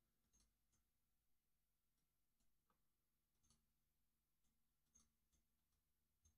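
Near silence, broken only by a few very faint, scattered computer mouse clicks as warp markers are placed.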